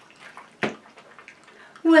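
Low hiss with scattered small clicks and rustles, and one sharp knock a little over half a second in; a woman starts speaking near the end.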